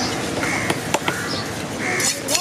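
Crows cawing several times in short calls, with a few sharp knocks from the knife work on the wooden chopping block in between, over the background noise of a busy market.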